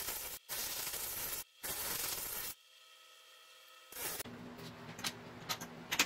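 Carbide hollowing tool cutting inside a spinning oak bowl on a lathe: a steady hissing scrape that breaks off abruptly twice and stops about two and a half seconds in. After a brief near silence, a low steady hum with a few sharp metallic clicks as a hollowing rig's arm is handled.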